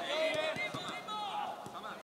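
Field ambience of a football training session: distant voices of players calling on the pitch, with a few soft thuds of balls being kicked, fading out near the end.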